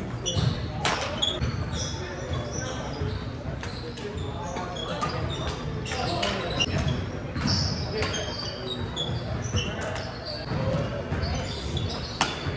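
Badminton rally: sharp racket strikes on the shuttlecock at irregular intervals, many short high sneaker squeaks on the hardwood court, and footfalls, echoing in a large hall.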